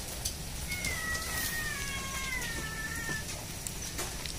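A cat meowing: one long, drawn-out call lasting about two and a half seconds, falling slowly in pitch.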